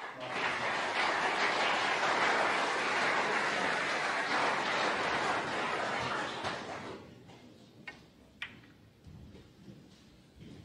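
A loud, even rushing noise for about the first seven seconds, then it fades away. Two sharp clicks follow about half a second apart: a snooker cue striking the cue ball, and the cue ball clipping a red as a thin-contact safety is played.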